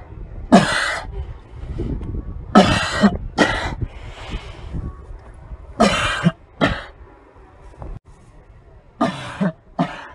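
A person coughing hard and loudly: one cough, then three pairs of coughs a few seconds apart.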